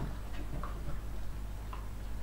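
Light, irregular clicks and crunches from smooth collie puppies eating dry kibble off a hard floor, over a steady low hum.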